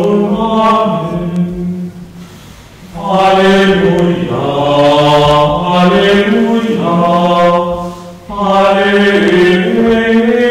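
Voices singing a slow liturgical chant at Communion in a Catholic Mass, each phrase held on long sustained notes. The singing breaks off about two seconds in and again briefly near eight seconds.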